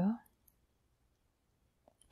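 Near silence: a woman's narrating voice trails off in the first moment, then nothing but a faint click near the end.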